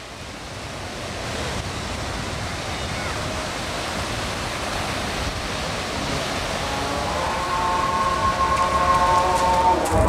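Ocean surf washing onto a sandy beach: a steady rush of waves that fades in and grows louder. From about seven seconds in, several sustained tones join it.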